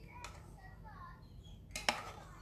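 Metal spoon clinking against a metal muffin tin while stirring egg mixture into a cup, with a light tap just after the start and a sharp clink near the end.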